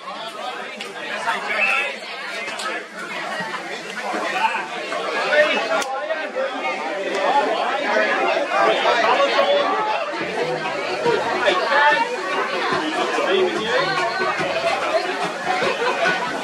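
Spectators near the camera chattering, many voices overlapping, louder from about four seconds in.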